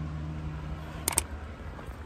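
Computer mouse-click sound effect, a quick double click about a second in, over a low steady background hum.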